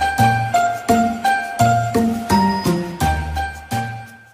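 Upbeat Christmas-style intro jingle: bright chiming notes over a bass line at a quick, even beat of about three notes a second, fading out at the very end.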